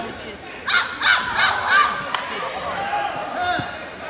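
A person in the crowd shouting four short, high-pitched calls in quick succession about a second in, with crowd chatter behind, followed by a single sharp knock.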